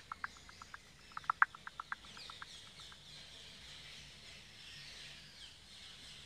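Ambient animal calls: two quick runs of short, sharp chirping notes, each run fading as it goes, over the first two and a half seconds, then fainter high chirps.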